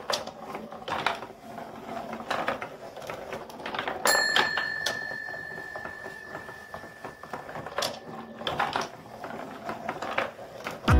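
Wooden marble machine running: irregular wooden knocks and clicks from its moving piston and linkage and the marbles on the track. About four seconds in, a single bell-like ring starts suddenly and sounds on for about four seconds.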